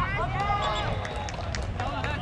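Several voices shouting calls across a soccer pitch during play, a few loud calls about half a second to a second in.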